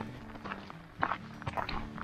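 Footsteps on a gravel road, a few uneven steps about half a second apart.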